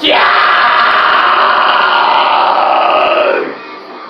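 A male metal vocalist's long harsh scream into a handheld microphone, held about three and a half seconds and dropping in pitch as it ends.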